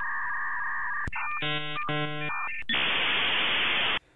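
Dial-up modem handshake over a telephone line, thin and cut off above the telephone band. It opens with steady answer tones and a two-tone warble, then a chord of many evenly spaced tones sounds twice, then a loud steady hiss runs until it cuts off suddenly. This is the modem's line probing and training as it negotiates a connection.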